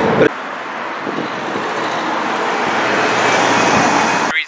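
Road traffic noise, a passing vehicle's tyre and engine noise swelling gradually louder as it approaches.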